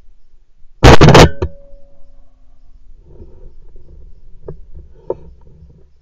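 A single shotgun shot fired at a flying woodpigeon, very loud, about a second in, followed by a fainter knock. Two faint clicks come a few seconds later.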